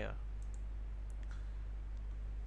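A few faint computer mouse clicks, about half a second in and again just over a second in, over a steady low hum.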